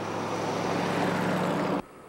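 An old pickup truck driving along the street, its engine hum and tyre noise growing louder as it approaches, then cut off suddenly near the end.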